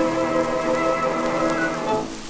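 Late-1920s dance-orchestra recording holding a sustained chord that falls away at the end, near the close of the piece. Underneath runs a steady, rain-like hiss and crackle.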